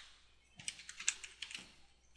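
Computer keyboard being typed on: a quick run of light key clicks starting about half a second in, as a word is typed out.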